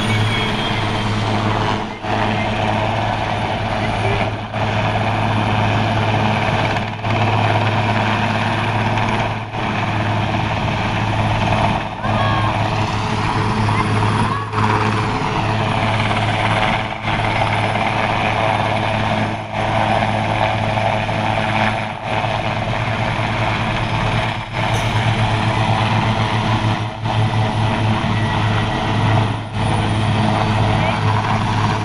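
South African Air Force Oryx transport helicopter running close by as it flies in low and settles into a hover for fast-roping: a steady, loud drone of rotor and turbines that dips in level briefly about every two and a half seconds.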